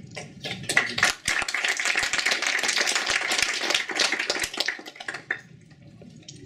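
An audience applauding for about five seconds, then dying away.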